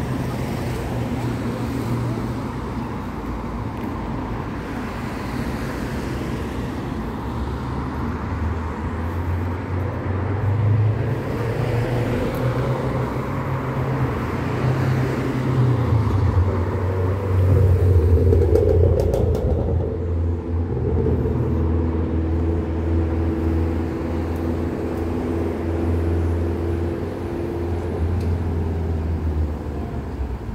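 Street traffic: cars driving past on a city road in a steady low rumble, loudest a little past halfway, with an engine hum in the second half.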